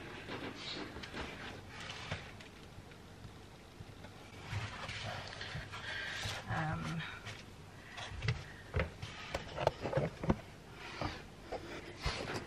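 Handling noise from a foam seat pad being unfolded and fitted onto a cupboard bench: rustling, then a series of light knocks and bumps in the second half.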